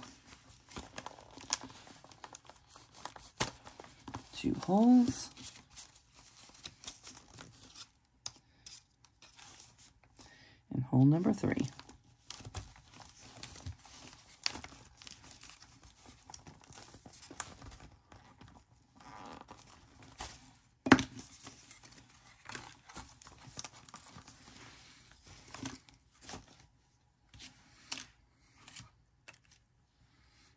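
Paper rustling and crinkling as journal pages and signatures are handled, with scattered light taps and clicks and one sharp click a little past the middle.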